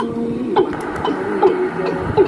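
Music playing back from a cassette tape on a deck, with held notes that bend and waver in pitch and a few light clicks.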